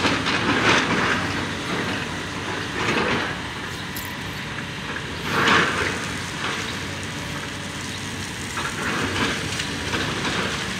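Hydraulic excavator running and working through demolition rubble, with a loud crunch and clatter of debris every two to three seconds over the steady machine noise.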